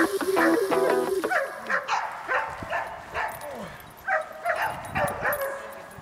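Background music fades out over the first second and a half, then a Belgian Malinois barks in a string of short barks, about two a second, during protection work on a decoy.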